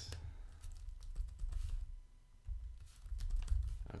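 Computer keyboard being typed on in short, irregular runs of keystrokes, with a low rumble underneath.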